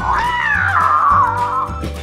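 Hatchimals electronic dragon toy giving one long warbling creature call from its speaker, rising at first and then sliding down in pitch, over background music.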